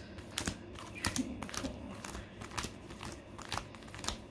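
Foil Pokémon booster pack wrappers crinkling as a stack of packs is handled and sorted by hand, a run of irregular light crackles.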